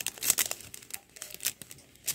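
Clear plastic packaging and cellophane wrap crinkling as it is handled: a quick run of sharp crackles, loudest in the first half second, with another crackle about one and a half seconds in.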